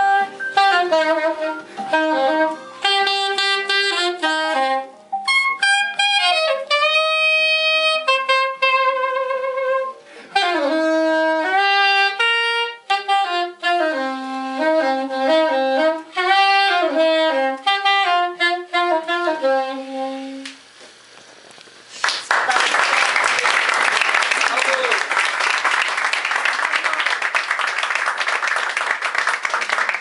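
Unaccompanied soprano saxophone playing a single melodic line of short phrases, quick runs and a wavering held note. The playing stops about twenty seconds in. Audience applause follows about two seconds later.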